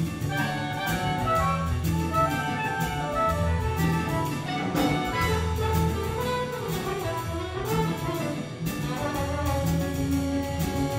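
Jazz big band playing live: saxophone, trumpet and trombone sections over bass, piano and drum kit, with regular cymbal strokes.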